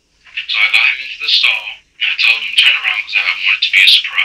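Speech only: a voice speaking in a recorded police interrogation, sounding thin and tinny.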